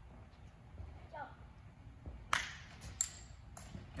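Low steady rumble of a large hall with brief, quiet speech. Two sharp clicks come a little under a second apart, just past halfway through; the first is the louder.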